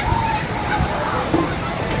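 Steady rain and gusty wind in a storm, with the wind rumbling on the microphone.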